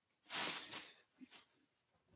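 Rustling of a bag of t-shirts being rummaged as a shirt is pulled out, a brief burst of rustle starting about a quarter second in, followed by a couple of faint soft rustles.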